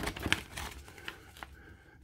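Clear plastic Blu-ray case and its paper booklet being handled: several light clicks and taps of plastic and paper as the insert is pushed back into the case, dying down near the end.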